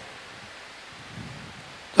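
Quiet room tone: a faint, steady hiss picked up by the preacher's headset microphone, with a slight low murmur a little past a second in.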